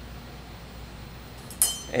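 A single bright clink of laboratory glassware about one and a half seconds in, ringing briefly, against quiet room noise.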